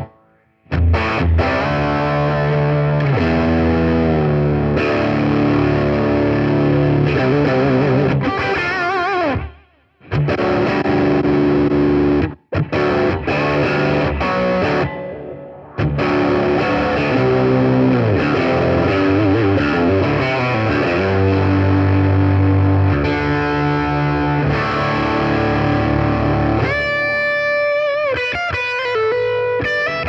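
Electric guitar through a Zoom G3Xn multi-effects processor on a distorted patch, playing riffs and held chords that drop sharply to silence in the gaps, as the just-added Zoom noise reduction shuts the sound off. Near the end it moves to lighter, higher single notes.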